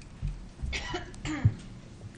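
A person coughing and clearing their throat into a microphone: two short rough bursts, the second the louder, after a few low thumps.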